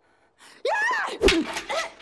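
Women crying out and grunting with effort as they fight, starting about half a second in, with a heavy hit about a second in.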